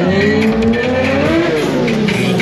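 Stunt motorcycle engine revving, its pitch climbing steadily for about a second and a half and then dropping near the end.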